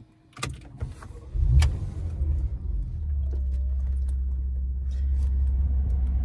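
A few sharp clicks, then the Porsche Macan S's 3.0-litre twin-turbo V6 starts about a second and a half in, flaring briefly and settling into a steady idle, heard from inside the cabin.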